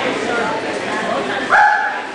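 A dog gives one short, loud bark about one and a half seconds in, over the murmur of people talking in the hall.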